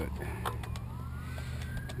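An emergency-vehicle siren wailing, its pitch gliding down to a low point about half a second in and then rising again, over a steady low hum. A few light clicks and taps are heard.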